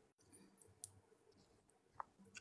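Near silence: faint room tone with a few soft clicks, one about a second in and one at the end.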